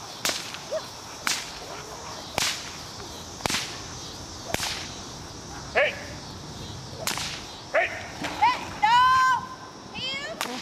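A helper's agitation whip cracking sharply about once a second, as used to work up a dog in protection training. Near the end come a few loud, high-pitched cries.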